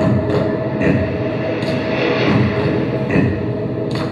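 Dance soundtrack playing over the hall's speakers: a loud, steady rumble like a train running on rails, with a held tone and irregular sharp clicks.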